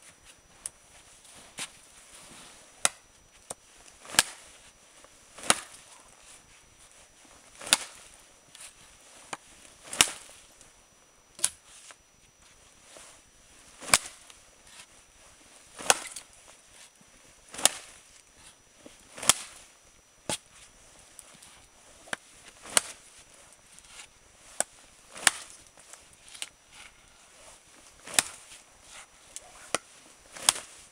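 A large Busse knife chopping into an upright wooden stake: repeated sharp chops, roughly one every one to two seconds.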